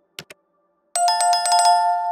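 A mouse-click sound effect, two quick clicks, then about a second in a notification-bell chime sound effect: a rapid run of about seven bell strikes that keeps ringing and slowly fades.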